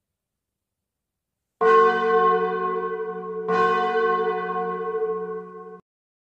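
Outro chime sound effect: a deep bell-like tone struck twice, about two seconds apart, each stroke ringing on and slowly fading. It begins after a second and a half of silence and cuts off abruptly near the end.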